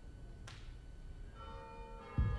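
A short sharp click, then a bell-like ringing tone with several pitches at once that starts about one and a half seconds in and keeps ringing.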